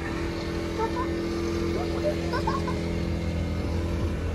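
A steady low mechanical hum with a constant tone running through it.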